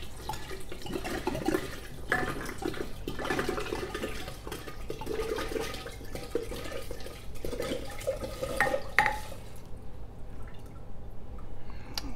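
Alcohol pouring from an upturned glass bottle into a glass jar of mushrooms, the liquid noise rising and falling unevenly as it fills. There are two sharp clicks about nine seconds in, then the pour dies away and it goes quieter.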